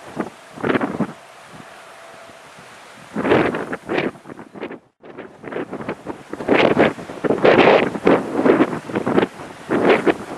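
Wind buffeting the camera microphone in irregular gusts, sparse at first and heavier and almost continuous in the second half. The sound cuts out briefly about halfway through.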